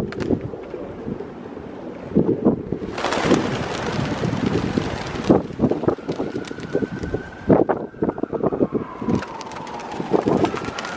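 A flock of feral pigeons taking off together about three seconds in: a rush of flapping wings with many sharp wing claps, over wind on the microphone. From about six seconds a faint siren-like tone slowly falls in pitch.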